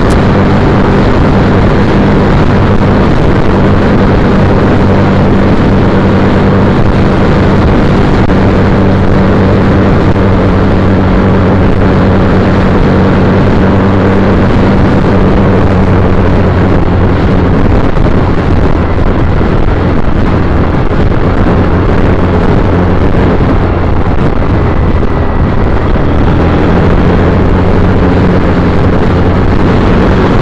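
A 2010 Triumph Bonneville T100's parallel-twin engine running under way, heard loud over a dense rushing noise. The steady low engine note blurs into the rush about halfway through and comes back clearly near the end.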